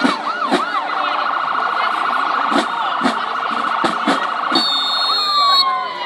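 A marching band playing siren-like sliding tones that swoop up and down, then a long fast-warbling held note, over scattered drum hits.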